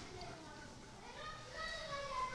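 Faint children's voices in the background, with a few higher-pitched calls in the second half.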